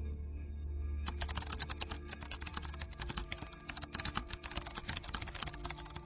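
Computer keyboard typing: a rapid, unbroken run of key clicks starting about a second in, over soft background music.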